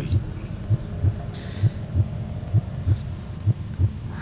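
A low heartbeat sound effect, a double thump about once a second, over a faint steady hum, building suspense before a judge's verdict.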